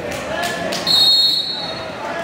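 A referee's whistle blows one short, steady, high blast of about half a second, stopping the wrestling action, over the chatter of voices in the gym.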